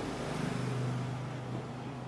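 A small pet's low, steady growl, a little louder about half a second in and easing slightly after.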